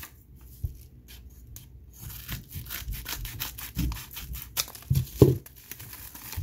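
A yellow kraft padded bubble mailer being handled and opened: paper crinkling, rubbing and tearing, growing busier after the first couple of seconds, with a few dull knocks in the later part.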